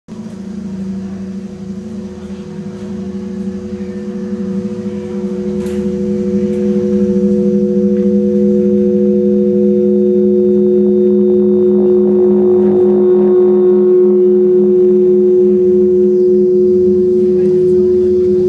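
Live experimental drone music: several steady low tones held together, swelling louder over the first six or seven seconds and then holding steady.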